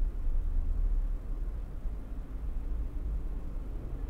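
Steady low hum with faint background noise, no other distinct sound.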